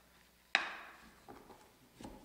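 A single sharp knock at a wooden lectern about half a second in, dying away quickly, followed by a few faint handling knocks as papers or cards are moved on it.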